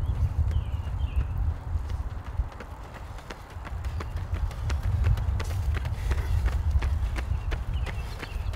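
Running shoes striking an asphalt road: the quick, regular footfalls of two runners, over a steady low rumble.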